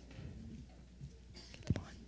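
Quiet stretch with faint whispering, and one short sharp knock near the end.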